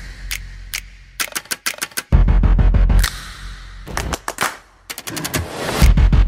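Trailer-style edited soundtrack: music with runs of quick, sharp clicking effects and two heavy low booms, the first about two seconds in and the second just before the end.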